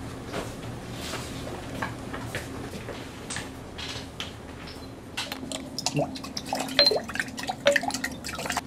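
Glass test tubes and glassware clinking, with liquid dripping, over a steady low room hum. The clinks grow louder and more frequent in the second half, some with a brief glassy ring.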